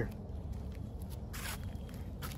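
Low, steady outdoor background rumble with a brief faint rustle about one and a half seconds in.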